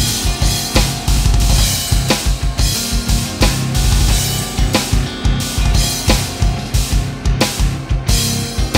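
Electronic drum kit played through its sound module: a fast double bass drum groove of rapid kick strokes under snare and cymbal hits, in a syncopated prog-metal pattern, over a heavy, low-tuned metal band track with bass and guitar.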